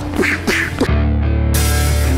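A brief burst of fight sound effects, a high cry and a few quick hits, cut off about a second in by loud closing music: a sustained chord over a deep, steady bass.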